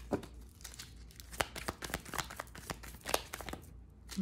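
A deck of oracle cards being shuffled and handled by hand: a run of quick, irregular papery clicks and snaps as the cards flick against each other.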